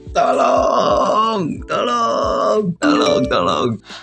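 A man's loud wordless vocal outbursts, three in a row, each falling in pitch at its end.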